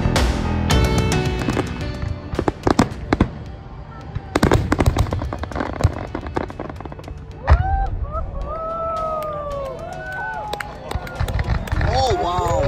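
Fireworks display: a run of sharp bangs and crackling bursts, with background music fading out in the first couple of seconds. From a little past halfway, overlapping rising-and-falling whistling tones sound over the bangs.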